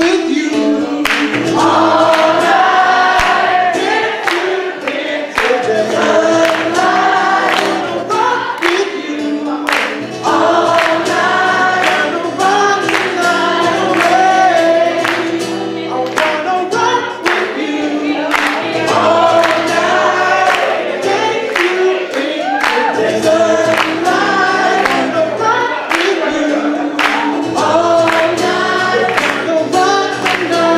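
Live cover song: several voices singing together over a strummed acoustic guitar with a steady beat.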